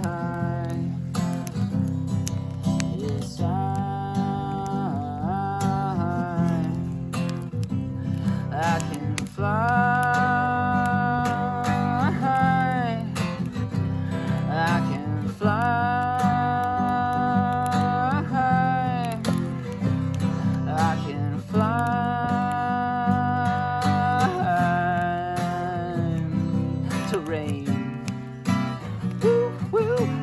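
Acoustic guitar strummed in a country-style song, with a wordless lead of long held notes over it, each about three seconds long and bending in pitch at its end, coming roughly every six seconds.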